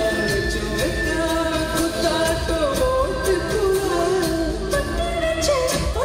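Live band playing a Tamil film song with a male vocalist singing a melodic line over drums keeping a steady beat, amplified through an arena PA.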